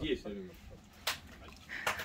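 Fragments of people talking, mostly quiet, with a single sharp click about a second in.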